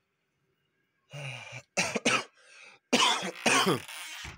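A man coughing and clearing his throat in a run of short, harsh coughs, starting about a second in and loudest near the end; his voice is rough from a hangover.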